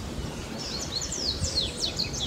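Small birds chirping outdoors: a quick run of short, high chirps that slide downward in pitch, starting about half a second in, over faint steady outdoor background noise.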